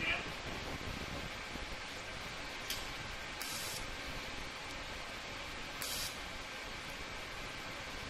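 TIG welding arc from an Everlast POWERTIG 255EXT, run at low amperage with the foot pedal only lightly pressed: a steady soft hiss. A few short, brighter crackles come around the third and sixth seconds.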